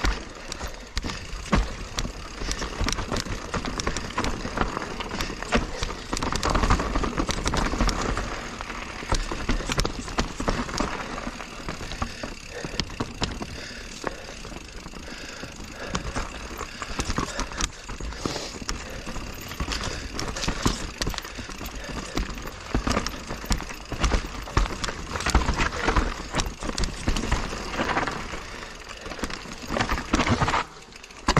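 A 2021 Giant Reign Advanced Pro 29 full-suspension mountain bike riding down rocky, rooty singletrack: tyres rolling over dirt and rock, with frequent knocks and rattles from the bike.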